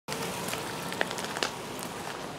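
Steady splashing of water from the Pegasus Fountain, with scattered small clicks and drips over it.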